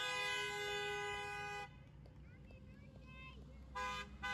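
Car horn held in one long steady blast for about a second and a half. Near the end a run of short honks begins, about three a second.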